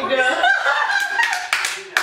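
A person clapping her hands about four times in the second half, over a high-pitched voice.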